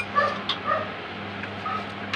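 Short pitched animal-like squeaks repeating about twice a second, over a steady low hum, with a light click about half a second in.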